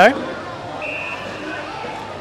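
Open-air field ambience of an Australian rules football ground, an even hiss, with a brief faint high-pitched tone about a second in.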